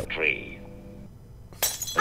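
Cartoon soundtrack with faint music, then a sudden short crash like breaking glass about one and a half seconds in.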